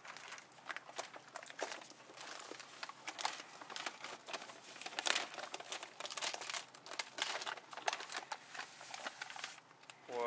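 Paper crinkling with many quick, irregular clicks and crackles as pieces of thin, scored chocolate-covered cereal bark are pried up off a paper-lined tray with a metal spatula.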